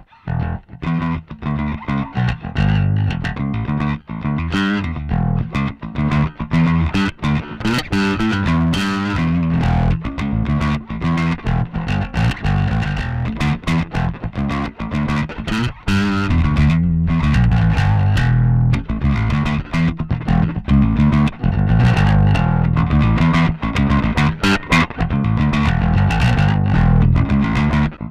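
Electric bass played through the Two Notes Le Bass preamp pedal's channel B: a proper bass overdrive tone that sounds fat. The playing runs on without a break and gets a little louder about halfway through.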